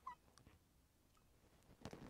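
Near silence, broken at the very start by one brief, faint high-pitched call and, about half a second in, a soft click.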